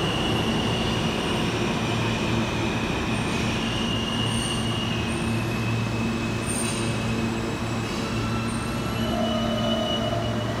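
New York City subway train running on a track in the station: a steady low rumble with thin, high wheel squeals that come and go over it.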